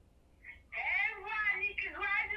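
A woman's voice coming through a mobile phone's loudspeaker on speakerphone, thin and high, starting just under a second in after a brief hush.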